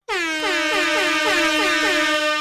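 DJ air horn sound effect: a loud sustained horn tone with rapid stuttered blasts, about four a second, each sliding down into the held pitch.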